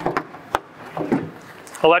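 Black plastic propane-tank cover being set down over the tanks onto its stainless base: a few clicks and knocks, the sharpest about half a second in.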